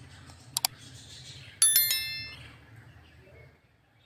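Subscribe-button sound effects: a quick double mouse click about half a second in, then a bright bell-like chime about a second later that rings out and fades.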